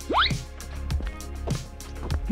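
Background music with a steady beat, and a quick rising cartoon 'bloop' sound effect just after the start.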